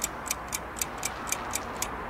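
Clock-like timer ticking, about four sharp, even ticks a second, counting down a pause and stopping near the end.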